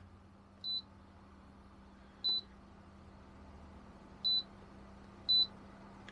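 Four short, high beeps from the Frezzer Pro 25L compressor cool box's touch control panel as its buttons are pressed to set the target temperature to 5 °C. Under them, the cooler's compressor hums faintly and steadily.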